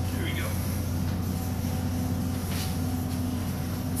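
Steady low mechanical hum with a faint constant tone above it, unchanging throughout, with no clank of the bar.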